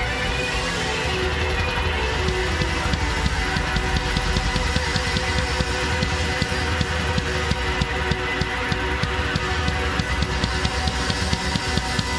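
Live rock band playing loud, full-band music: a drum kit with crashing cymbals keeping a steady beat under electric guitar.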